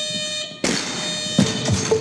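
Weightlifting competition's electronic down-signal buzzer sounding a steady buzz, the signal to lower the bar. It breaks off about half a second in and sounds again just after. About a second and a half in there is a thud as the barbell with bumper plates lands on the lifting platform.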